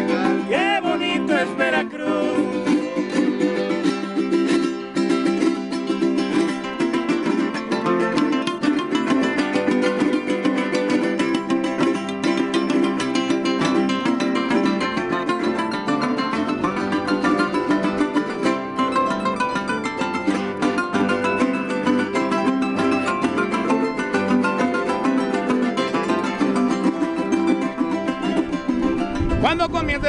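A live son jarocho ensemble playing an instrumental passage: jaranas strummed fast and steadily over a jarocho harp. A sung line fades out in the first two seconds, and the voices come back in near the end.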